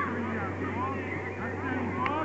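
Children's and spectators' voices calling out across a youth football pitch in short, rising shouts, over a steady low hum.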